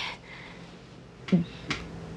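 Quiet room tone in a pause between words. About a second and a half in come a brief voiced sound and a couple of short, sharp clicks.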